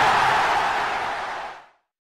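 Tail of an intro sound effect: a steady rushing noise that fades out about a second and a half in.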